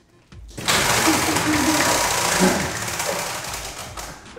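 Spinning prize wheel, its flapper clicking rapidly against the pegs, starting about half a second in and growing quieter toward the end.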